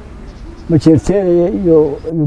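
An elderly man speaking in Somali, starting after a short pause about two-thirds of a second in.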